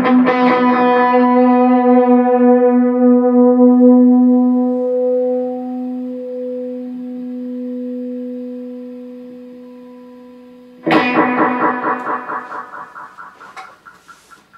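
Ibanez CMM1 electric guitar through a Boss Katana 50 amp with delay: one long note rings and slowly fades over about ten seconds. Near the end a sudden loud hit on the strings comes in, its delay repeats pulsing and dying away.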